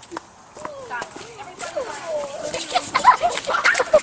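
Children's voices, excited shouting and calling out, growing louder and busier in the second half.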